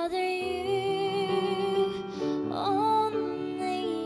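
A woman sings a slow worship song, accompanying herself on a Yamaha grand piano. She holds two long, wavering sung phrases over sustained piano chords, the second starting a little past halfway.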